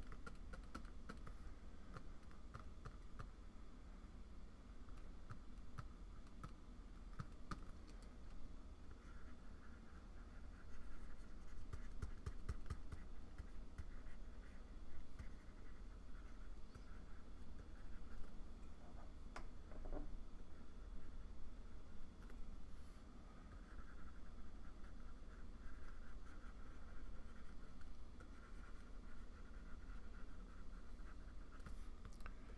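Faint stylus strokes and taps on a Wacom Cintiq pen display while coloring: scattered small clicks, with longer scratchy stretches a third of the way in and again near the end.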